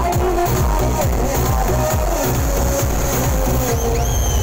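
Electronic dance music played loud through an outdoor DJ sound system, with a heavy bass kick beating about twice a second.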